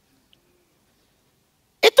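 Near silence: a pause in a sermon, with speech resuming near the end.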